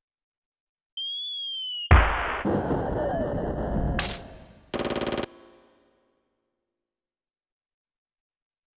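Yamaha PSR-EW425 digital keyboard playing a string of short synthesised sounds from its voice set, one key at a time: a thin steady beep, then a loud sudden crash that dies away over two seconds, a quick rising sweep, and a short buzzing burst.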